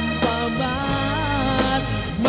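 A band playing a Tagalog pop song, with a lead vocal line over bass, drums and other instruments.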